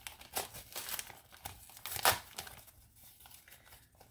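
Paper wrapping around a potted plant crinkling and rustling as it is handled and unwrapped: a run of irregular crackles, the loudest about two seconds in.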